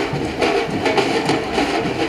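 Marching drums beating a steady rhythm, about four strokes a second, over a dense background of crowd noise.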